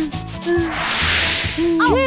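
Cartoon sound effect: a scratchy hiss lasting about a second, over a children's-music backing with a steady beat.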